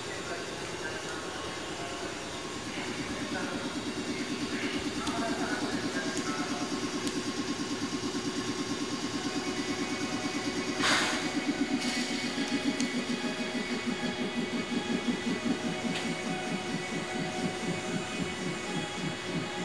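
A JR 107 series electric train standing at the platform with its equipment running: a low, rapidly pulsing hum that grows louder a few seconds in, and a short hiss of released air about 11 seconds in.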